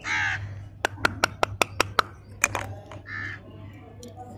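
A loud, harsh bird call right at the start, followed by a quick run of about six sharp clicks from handled plastic candy wrapping, with one more click half a second later. A softer short call comes a little after three seconds in.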